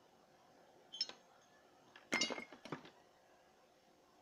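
A single sharp click about a second in, then a short clatter of light clinks and knocks with a brief metallic ring, as of small hard objects being handled.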